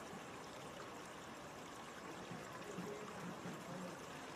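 Faint, steady rushing background noise, with no distinct events.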